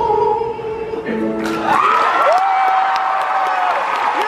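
A male solo singer holds the song's final sustained note over piano. The note ends about a second in, a few low piano notes close the piece, and the audience breaks into applause and cheering with whoops about a second and a half in.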